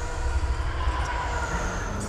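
A low, steady rumble of heavy industrial machinery with a thin high whine above it: film sound design for a vast industrial cityscape.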